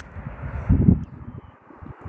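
Wind buffeting the phone's microphone in uneven low gusts, over a steady rush of traffic from the road beside the lot.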